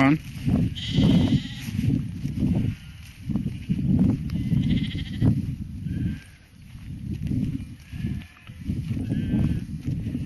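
Sheep bleating a few times, about a second in, around five seconds and near the end, over a low irregular rumble on the microphone.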